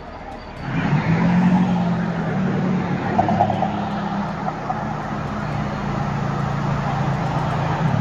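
A vehicle engine running steadily under a broad rushing noise, starting up loud about a second in and holding to the end.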